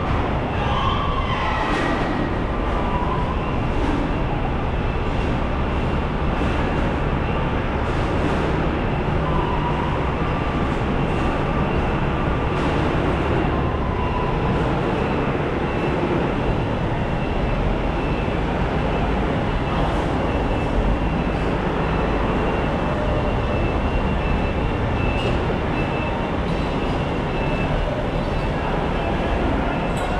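Continuous mechanical drone of running machinery at a steady level, with faint high whines over it, consistent with a tanker truck's engine and pump running while it loads oily water.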